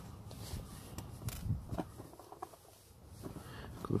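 Faint handling noise of small fishing tackle being picked up and fingered at a plastic tackle box: a few light clicks and rustles, mostly in the first two seconds, over a low rumble.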